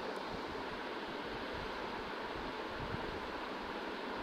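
Steady, even background hiss of room tone in a pause between spoken phrases.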